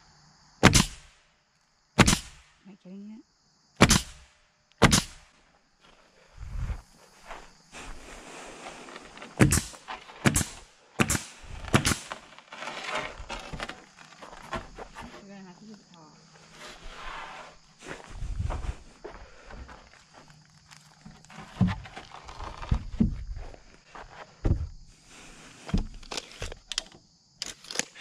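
Pneumatic nail gun driving nails through rough-sawn siding boards. Single sharp shots come every second or so: four in the first five seconds, a quick run of four around ten to twelve seconds in, and more near the end. Boards scrape and shuffle in between.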